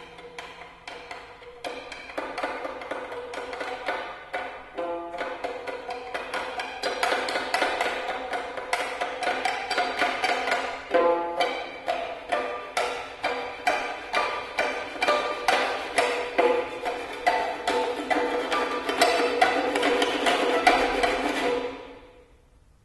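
Prepared, amplified violin played with a rolled paper tube against the strings, giving a fast run of percussive, pitched taps. The taps grow louder and denser toward the end and then stop abruptly.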